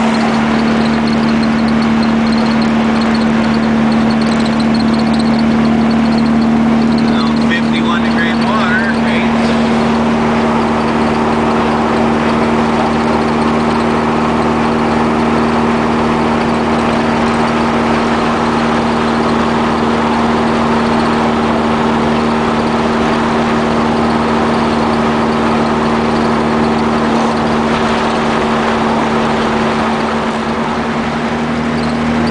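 VW Super Beetle rat rod's engine running steadily at cruising speed, heard from inside the moving car with road and wind noise.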